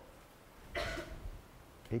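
A person's single short cough, about a second in.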